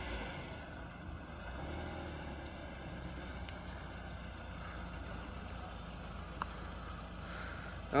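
A 1996 BMW Z3's 1.9-litre four-cylinder engine, which has a blown head gasket, running at low revs as the car slowly reverses, a steady low rumble.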